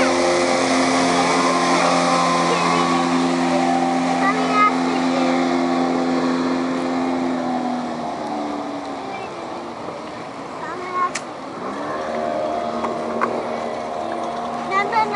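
Suzuki 55 outboard on a 17-foot Sea Pro running at speed past the listener. Its steady engine note drops in pitch about eight seconds in and runs quieter as the boat moves away.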